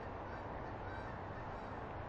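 Steady outdoor hiss from the wildlife cam's microphone, with faint bird calls.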